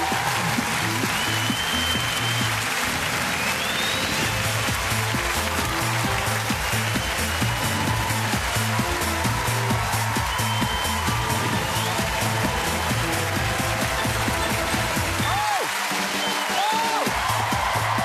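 Upbeat TV theme music with a steady beat, played over continuous studio-audience applause and cheering.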